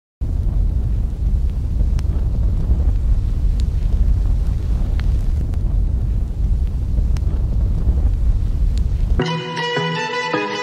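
A loud, low, noisy rumble with a few faint clicks for about nine seconds, then music with a clear melody cuts in suddenly about a second before the end.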